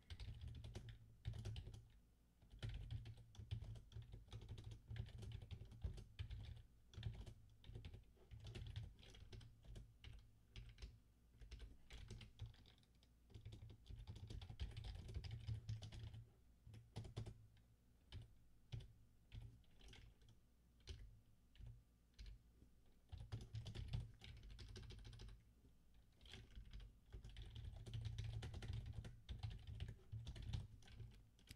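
Computer keyboard typing in quick bursts of keystrokes with short pauses between them, faint.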